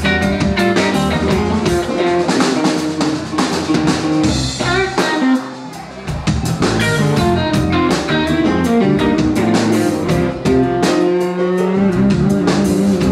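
Live band playing an instrumental passage on hollow-body electric guitar, Kawai keyboard and drum kit. There is a brief drop in the sound about five seconds in, then the full band comes back.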